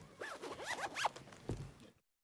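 Short rising-and-falling squeaks and rustling as people get up from chairs and move about in a meeting room, with a low thump about a second and a half in. The sound cuts off suddenly at the end.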